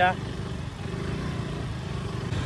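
KTM RC motorcycle's single-cylinder engine running steadily at low speed, heard from the rider's seat as a low, evenly pulsing rumble with light road noise.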